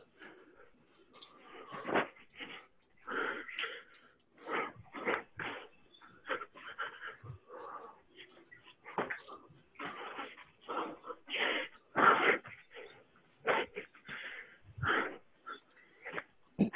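Heavy, wheezing breaths and moans from a person exerting during sword drills, coming through an unmuted video-call microphone. They come as rapid, irregular gasps, one or two a second.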